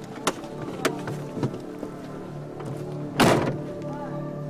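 A vintage sedan's door shuts with a thunk about three seconds in, the loudest sound here, after a few light clicks. Drama score music plays underneath.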